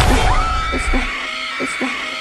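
A loud hit at the very start, then a long high scream held at a steady pitch over trailer sound design, with a faint pulsing underneath.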